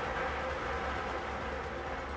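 Steady drone of an automatic lottery drawing machine mixing its numbered plastic balls, with a low hum under it.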